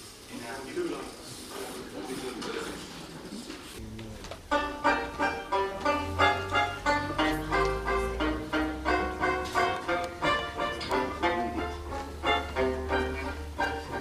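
Jazz band starting a tune: a banjo comes in about four seconds in, strummed in a steady rhythm of about two strokes a second, with low sustained bass notes under it from about six seconds. Before the banjo there is only faint murmur.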